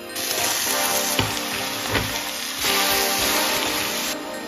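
Raw chicken pieces going into hot oil and fried onions in a steel pot, sizzling hard, with a couple of low thuds as pieces land, about one and two seconds in. The sizzle swells louder in the second half, over background music.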